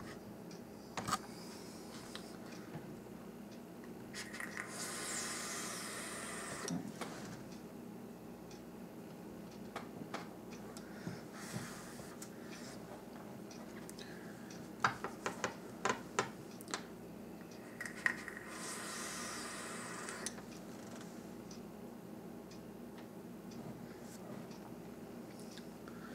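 Two long, faint, breathy hisses of a person vaping a rebuildable dripping atomizer, each about two and a half seconds and about fourteen seconds apart. A few small clicks and taps fall between them.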